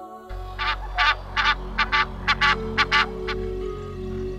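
Egyptian goose calling: a run of about ten short, harsh honks over roughly three seconds, over soft background music.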